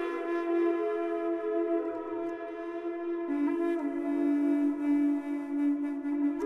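Background music: a woodwind instrument holding long, sustained notes, stepping down to a lower note about three seconds in.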